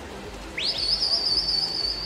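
A shrill whistle rises sharply about half a second in and is then held at a high, wavering pitch for well over a second, over the steady murmur of a pool hall.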